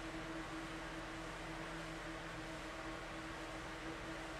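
Quiet steady room background: a low, even hum with a hiss, with no distinct events.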